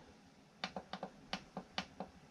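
A quick run of light, faint clicks from the push buttons of an AC Infinity cabinet-fan controller being pressed over and over, starting about half a second in.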